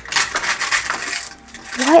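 Crinkling and tearing as a covered spot on a cardboard toy surprise box is poked through and its contents rustled, loudest in the first second and then dying down.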